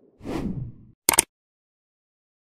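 Falling whoosh sound effect, followed about a second in by one short, sharp click effect, as part of an animated like-and-subscribe end screen.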